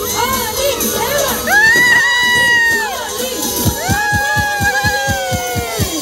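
A crowd with many children shouting and cheering, with two long drawn-out yells. About halfway, music with a steady bass beat of about four pulses a second comes in underneath.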